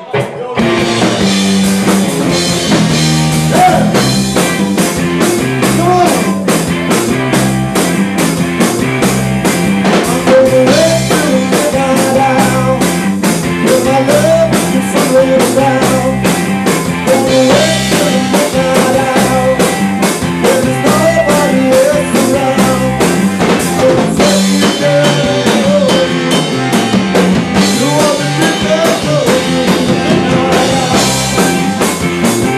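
A live rock band (drum kit, electric bass and two electric guitars) launches into a song together right at the start and plays on at full volume with a steady, even drumbeat and a melody line over it.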